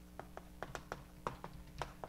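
Chalk writing on a blackboard: about a dozen sharp, irregular taps and clicks as the chalk strikes and lifts from the board.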